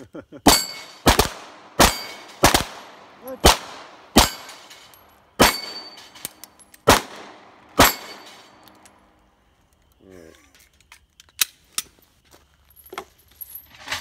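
Handgun fire at steel plate-rack targets: about a dozen quick, unevenly spaced shots, some in close pairs, over the first eight seconds, with the steel plates ringing on hits. Then small clicks after the firing stops.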